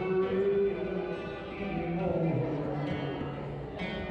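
Live acoustic guitar with a man singing into a microphone, carrying long held notes.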